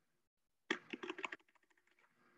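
Typing on a computer keyboard: a quick flurry of keystrokes starting about three-quarters of a second in, then fainter, scattered clicks.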